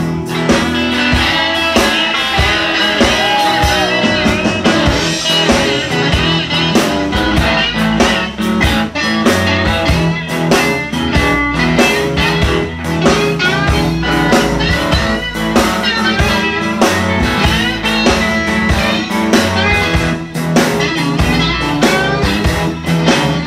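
Live blues band playing an instrumental break: electric guitar playing a lead line with bending notes over electric bass and drums.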